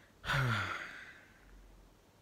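A man's sigh: one breathy exhale with a falling voice, starting about a quarter second in and trailing away within a second.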